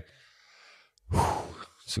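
About a second of near silence, then a man's audible breath into a close microphone, strong at first and tailing off, just before he speaks.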